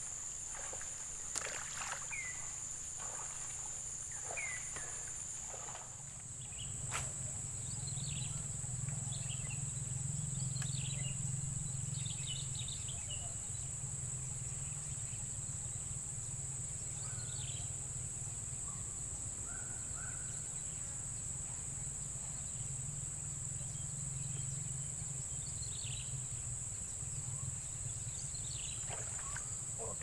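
Steady high-pitched insect chorus, with scattered short bird chirps and a low steady hum underneath that grows louder about seven seconds in.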